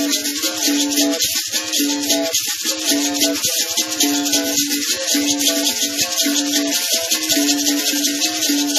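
Two capoeira berimbaus, steel-wire musical bows with gourd resonators, struck with sticks in a steady interlocking rhythm, one low note recurring in short held tones among higher notes. The caxixi basket rattles shaken with the strikes give a fast, continuous shaking pulse.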